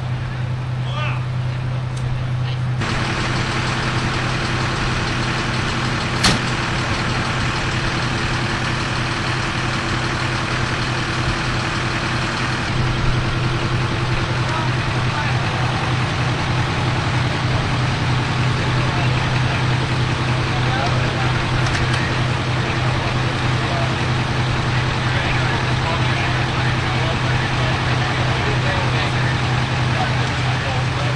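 Large emergency-vehicle engine idling with a steady low drone, under indistinct voices. A single sharp click about six seconds in.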